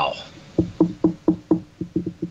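A quick series of short knocks, about four a second, starting about half a second in and coming closer together and unevenly near the end.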